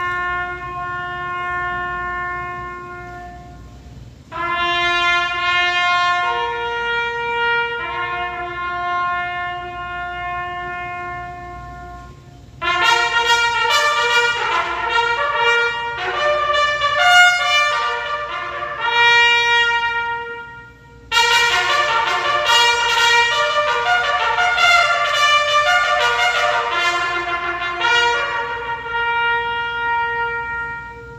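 Trumpets playing a slow piece in long held notes, in four phrases broken by short pauses. The first phrases are one or two lines; from the middle on, several parts sound together in harmony.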